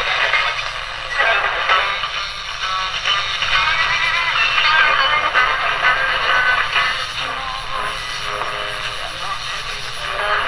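GE 7-2001 Thinline portable radio's speaker playing a weak AM station near the top of the band: a broadcast voice and some music under static, with thin sound and little bass.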